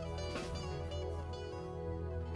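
Live band music: a slow, gentle passage of sustained string tones over a steady low bass, with one plucked note about half a second in.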